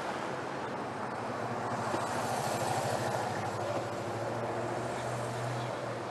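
Motorcade cars driving past in a line, a steady hum of engines and tyre noise that swells about two seconds in and eases off toward the end.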